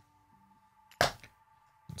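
A single sharp knock about a second in, as a small cardboard gift box is set down on a hard desk.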